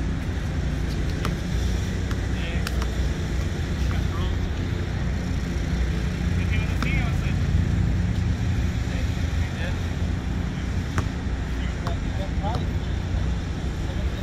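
Steady low rumble of road traffic, with a few scattered sharp knocks of a basketball bouncing on the outdoor court and faint distant voices.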